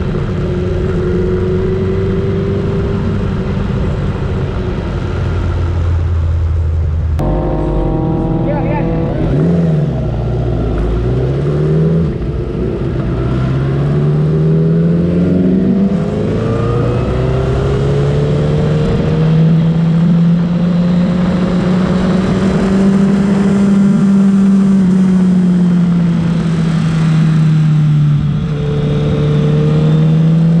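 Honda sport motorcycle engine heard from an onboard camera. It runs steadily at low speed at first. After an abrupt change about seven seconds in, it accelerates hard, its pitch climbing and dropping at each upshift. It then holds a high speed, rising and easing slowly in pitch.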